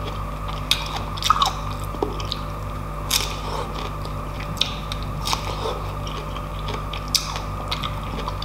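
Close-miked chewing of juicy pineapple chunks: irregular wet clicks and small crunches from the mouth, a cluster of louder ones about a second and a half in.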